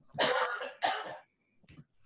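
A man clears his airways with two short, harsh bursts, the first a little longer, a little off the microphone.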